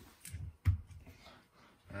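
Handling noise on a riflescope as a hand takes hold of the elevation turret: a few soft bumps and one sharp click just over half a second in.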